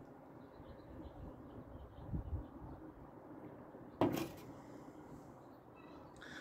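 A stemmed beer glass being set down on a table: one short knock about four seconds in, against a quiet background.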